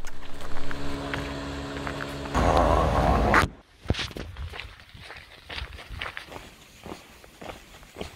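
A steady engine hum with evenly spaced tones, swelling into a loud rush that cuts off suddenly about three and a half seconds in. After that come quieter, scattered footsteps and clicks.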